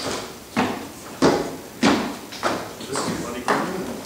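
Hard-soled shoes walking across a wooden stage: about seven sharp steps, roughly one every half second, each echoing briefly in the hall.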